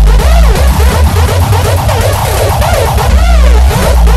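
Loud hardtekk electronic dance track at 165 BPM. The steady kick drum gives way to a break of synth notes bending up and down over a loose, rumbling bass, and a heavy sustained bass swells back in near the end.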